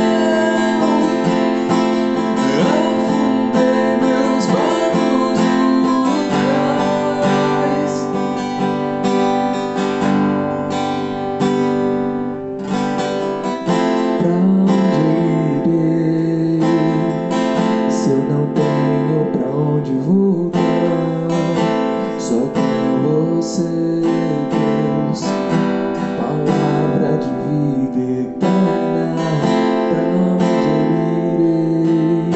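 Steel-string cutaway acoustic guitar strummed and picked through the chord changes of a slow worship song.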